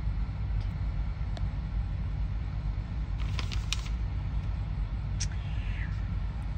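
Steady low background rumble, with a few faint clicks about halfway through and again near the end.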